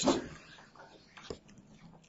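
The tail end of a man's spoken word, then quiet room tone with one faint click about a second and a third in.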